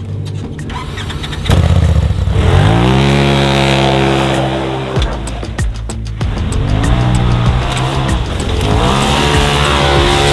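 Polaris RZR side-by-side engine revving hard as it is driven through deep snow. The pitch climbs and holds high, drops off suddenly about five seconds in, then climbs again twice.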